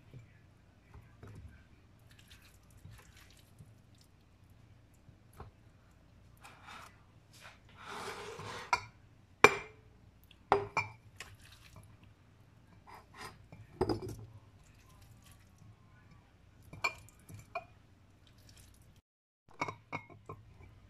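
Glass jars clinking and knocking against each other and the worktop as they are moved and packed by hand with marinated shrimp, with scattered quieter handling noises in between. The sharpest clink comes about nine and a half seconds in.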